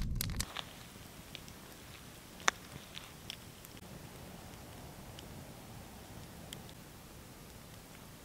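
A brief moment of chewing, then a wood campfire crackling: scattered sharp pops, the loudest about two and a half seconds in, over a faint steady hiss.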